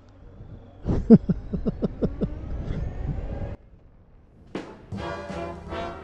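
A man laughing in a quick run of short bursts, then a sudden cut, and swing music with brass comes in near the end.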